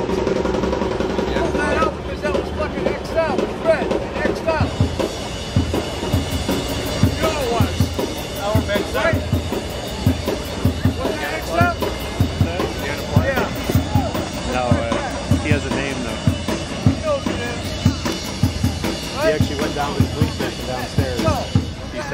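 Music with a steady drum beat, with a voice over it.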